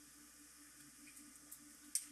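Very quiet room tone with a faint steady low hum, broken by a few soft clicks toward the end.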